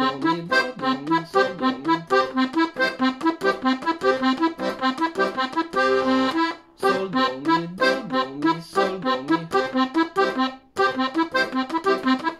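Hohner Verdi II piano accordion playing an arpeggiated accompaniment pattern in quick, even notes over the bass. A chord is held briefly about six seconds in, and the playing breaks off for a moment twice.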